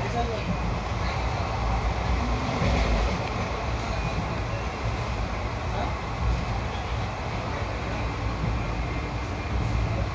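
Passenger train running steadily at speed, a continuous low rumble of wheels on rails heard from inside the coach.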